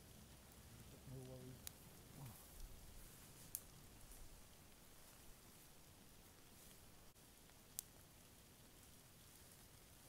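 Near silence: a faint steady hiss with three isolated sharp clicks spread through it, and a brief low murmur of a voice about a second in.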